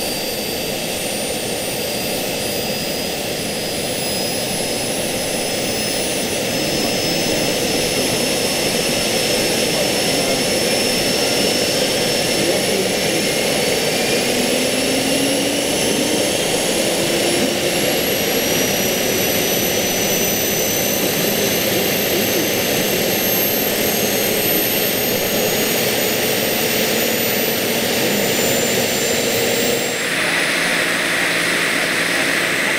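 Jakadofsky Pro 5000 model turbine engine of a scale Bell 412 RC helicopter running on the ground, a steady rushing noise with high whines that climb slowly in pitch as it spools up. It grows louder a few seconds in and then holds steady.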